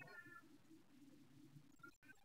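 Near silence on a video call, with a faint, brief high-pitched sound at the start and again just before the end.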